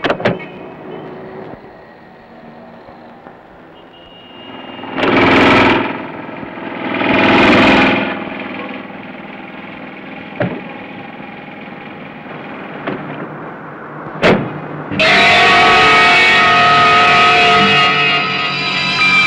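Suspense film score: a quiet, sparse music bed with a few sharp hits and two swelling rushes in the middle, then a loud, dense, distorted sustained chord that cuts in suddenly about three-quarters of the way through.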